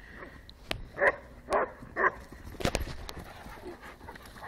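A dog barking three times, about half a second apart, while dogs play rough together. A few sharp knocks follow.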